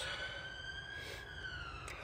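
An emergency-vehicle siren wailing faintly, its pitch slowly rising and then falling.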